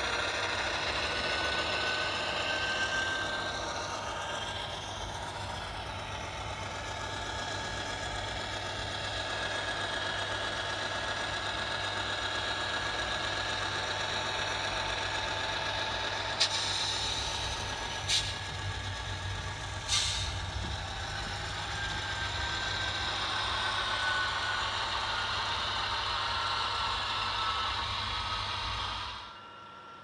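Sound decoder in an Atlas Dash 8-40CW model diesel locomotive playing a diesel engine running steadily through the model's small speaker as it runs along the track. Three sharp clicks come a little past halfway.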